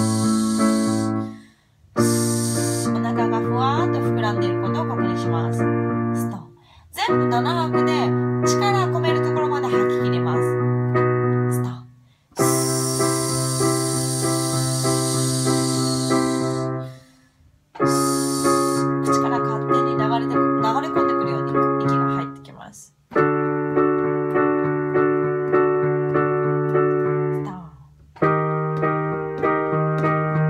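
Electric-piano backing track playing held chords in phrases about five seconds long, each ending in a short break, with a melodic line over some of them. Over several phrases comes a hissed "sss" exhale, the seven-beat breath-out of an abdominal-breathing drill, the longest about halfway through.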